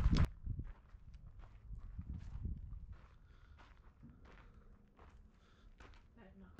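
Faint footsteps and scuffs of someone walking across a concrete floor slab, with scattered light ticks.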